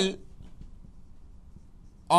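Felt-tip marker writing on a whiteboard, faint strokes as words are written out.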